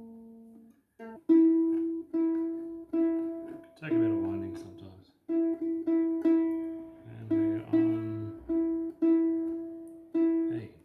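A newly strung ukulele's E string plucked again and again, about twice a second, on one steady note while its tuning peg is turned to bring the string up to pitch. Twice, around four and seven-and-a-half seconds in, a brief lower sound joins the plucking.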